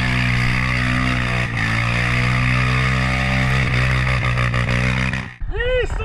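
End-card outro audio: a steady held drone of several pitches, which breaks off sharply about five seconds in. Short rising-and-falling, voice-like calls follow right after.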